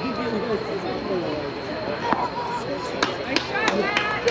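Several people talking at once, indistinct and overlapping. A quick run of sharp clicks comes near the end.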